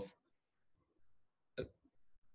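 Near silence of a pause in a close-miked voice recording, broken once, about one and a half seconds in, by a brief mouth sound from the speaker.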